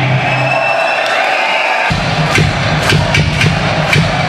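A live heavy metal band's last chord fades away under a high steady tone. From about two seconds in, a large concert crowd is cheering loudly, with several sharp hits cutting through.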